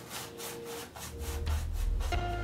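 Paintbrush scrubbing oil paint onto a canvas in quick, repeated back-and-forth strokes, about four to five short rasps a second. A low hum comes in about halfway through.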